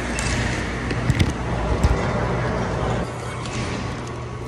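Handling noise from a phone held against a fleece coat: rumbling and rubbing with a few sharp knocks between one and two seconds in, over a steady low hum. The rumble drops off about three seconds in.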